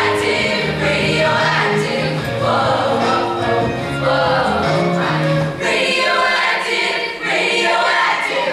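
Mixed-voice show choir singing an arranged pop song. The low bass part drops out about five and a half seconds in, leaving the upper voices.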